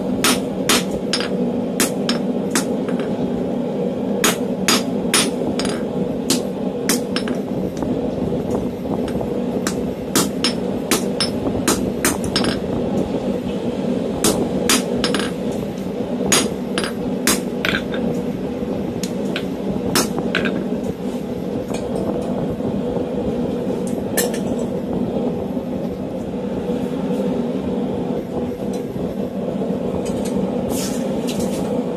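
Hand hammer striking hot round steel stock on a steel anvil, in runs of quick blows with short pauses between them and fewer blows near the end. Under it runs the steady hum of the forge blower and a shop fan.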